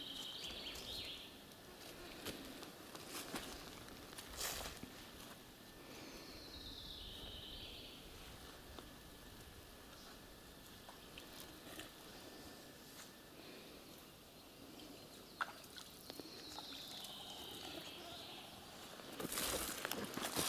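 Quiet woodland: a small songbird sings a short descending phrase three times, about ten seconds apart, with a few scattered clicks and rustles of footsteps.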